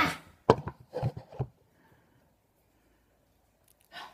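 A sigh, then a sharp knock about half a second in and a few lighter knocks over the next second on a wooden tabletop.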